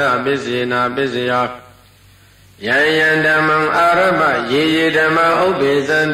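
A Buddhist monk chanting Pali verses in a melodic, sustained recitation. He sings a phrase, pauses for about a second, then starts the next phrase.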